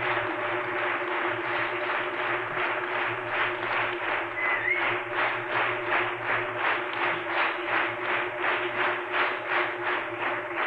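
Theatre audience applauding, settling after a few seconds into rhythmic unison clapping of about three claps a second. There is a short whistle partway through and a steady low hum underneath.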